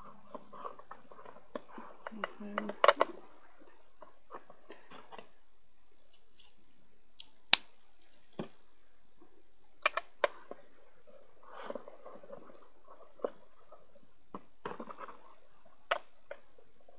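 Hands working inside a clear plastic enclosure: scattered sharp taps and knocks against the plastic, the loudest about three seconds in and halfway through, with soft rustling of coco-fibre substrate being pressed and moved between them.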